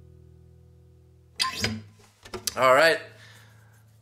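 The last chord of an acoustic guitar ringing out and fading away. About a second and a half in, a couple of short, louder bursts of the player's voice follow.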